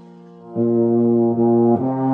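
Euphonium playing a solo line. After a brief quiet gap, a loud sustained note enters about half a second in and is held, then moves to a new note near the end.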